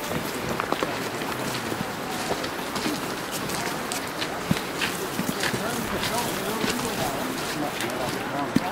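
Several people talking indistinctly among themselves, with scattered footsteps of people in waders crunching on gravel over a steady background rush.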